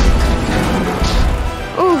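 Cartoon sound effects: a heavy low rumble with a crashing hit at the start and another about a second in, over background music.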